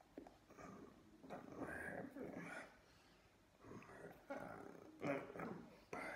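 A man's voice making wordless vocal sounds in two stretches of short bursts, with a lull in the middle.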